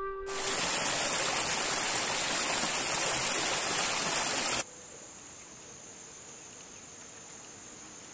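A small mountain stream tumbling over rocks, with a loud steady rush of splashing water that cuts off suddenly about four and a half seconds in. After that only a faint, steady high-pitched insect drone remains.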